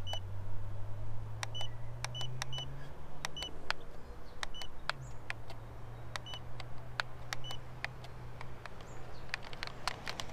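About eight short high beeps from a small toy-grade FPV transmitter, spaced irregularly and each with a button click, as its buttons and switches are pressed. A low steady hum runs underneath, rising in pitch about three seconds in and dropping back about two seconds later.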